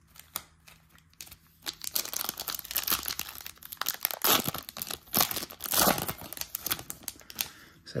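Foil wrapper of a Topps baseball card pack being torn open and crinkled by hand. It is quiet for the first couple of seconds, then a run of crackling and tearing follows, loudest in the middle.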